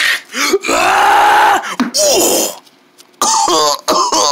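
A person's voice yelling a long 'ahh!', then a shorter cry. After a brief lull, a quavering, wobbling cry comes near the end.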